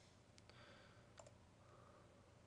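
Near silence with two faint computer-mouse clicks, about half a second and a second in.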